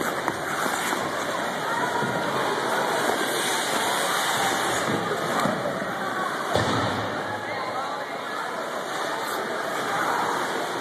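Steady din of an indoor ice rink full of skaters: many indistinct voices mixed with the scrape of skate blades on the ice, blurred into a continuous wash of noise.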